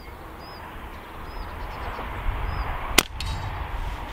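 A single shot from a moderated Walther Rotex RM8 Varmint PCP air rifle about three seconds in: one short, sharp report that ends at once.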